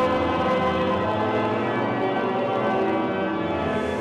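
Pipe organ playing sustained chords, steady and fairly loud.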